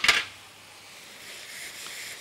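Swiss chard frying in a pan with tomato and garlic: a short, sharp burst at the very start, then a faint steady sizzle.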